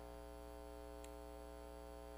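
Steady electrical mains hum, a low drone with a stack of even overtones, picked up by the recording system; a faint tick about a second in.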